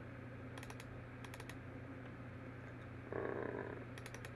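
Computer mouse clicking on folders, a few quick double-clicks in small groups, over a steady low electrical hum. A brief soft rustle a little after three seconds in.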